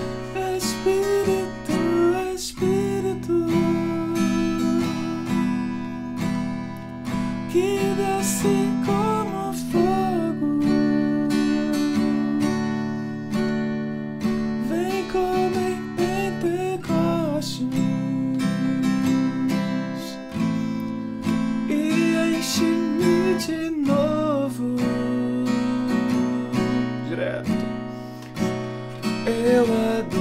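Acoustic guitar strummed through a repeating E minor, D, C, A minor and B7 chord progression, the chords changing every few seconds, with a man's voice singing the melody over it.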